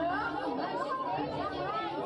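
Several voices talking over one another without pause: a crowd of actors speaking on stage in a Passion play.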